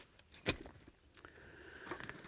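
Gear being handled: a single sharp click about half a second in as a zippered fabric pouch holding a wire antenna is set down on a table, followed by faint rustling of the bag.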